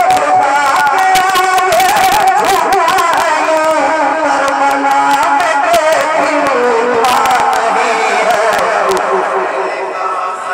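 A man's voice chanting a melodic naat recitation, the pitch wavering and gliding. A fountain firework crackles over it in clusters of sharp clicks, thickest around the first three seconds and again from about seven to nine seconds in.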